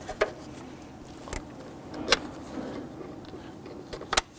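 Plastic vapor canister purge solenoid being pressed and worked down into the intake by gloved hands: low handling noise with three light, sharp clicks.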